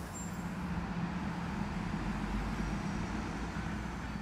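Road traffic running steadily: a low engine rumble with a faint steady hum, a little louder in the middle.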